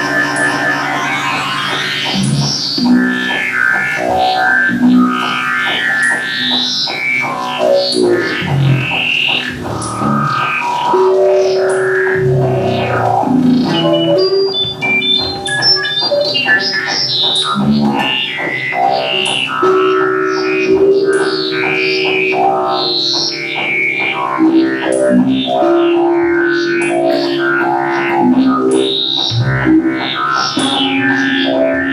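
Live experimental music: an electric guitar played through effects over electronic drones, with layered held notes that shift in pitch every second or two.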